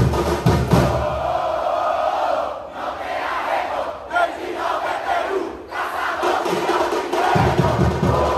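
A football supporters' group chanting and shouting together in phrases, with its drum section (bateria) stopping after the first second. The drums come back in near the end.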